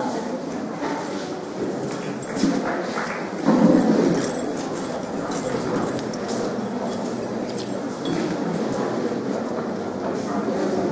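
Scattered hand clapping and murmuring voices from an audience in a hall, with a louder bump about three and a half seconds in.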